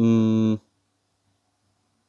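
A man's drawn-out hesitation vowel, a flat 'eee' held for about half a second at the start.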